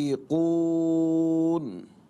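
A male voice reciting the Quran in a chanted style: a short syllable, then one long, steady held vowel lasting over a second, which dies away near the end.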